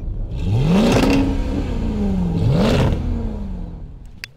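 Car engine revved twice, each rev climbing quickly and then falling away slowly, just under two seconds apart.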